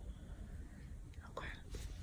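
Quiet room tone with a steady low rumble, and a soft, whispered "okay" near the end.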